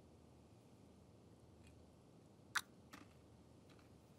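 Near silence: quiet room tone, broken by one short sharp click about two and a half seconds in and a fainter click just after it.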